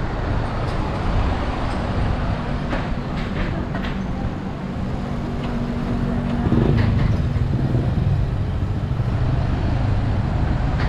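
Street traffic, with a motor vehicle's engine running close by over a steady low rumble. The engine hum grows louder about two-thirds of the way through.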